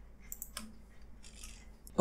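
A few faint, short clicks from a computer keyboard and mouse, over a low steady hum.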